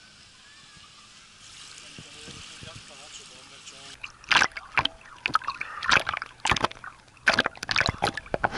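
Faint beach ambience with distant voices, then from about halfway, seawater sloshing and splashing loudly and irregularly against a camera held at the water's surface.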